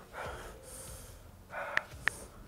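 A man breathing hard in gasps and sniffs, with one sharp smartphone keyboard click near the end as he starts typing on the touchscreen.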